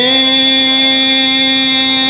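A man reciting a noha, a Shia lament, holds one long steady sung note at the end of a line.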